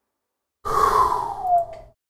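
A man's loud, breathy sigh that glides down in pitch, lasting a little over a second.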